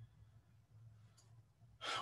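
A quiet pause in a spoken talk with a faint steady low hum; the man's voice starts again just at the end.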